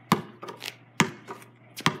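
A basketball bouncing on a concrete driveway: three sharp bounces a little under a second apart, with fainter knocks between them.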